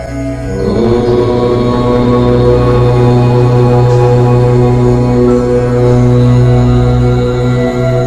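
A voice chanting one long, steadily held 'Om' over a sustained meditation-music drone, entering about half a second in.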